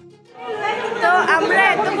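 Indistinct chatter of several people talking at once, fading in after a brief quiet moment at the start.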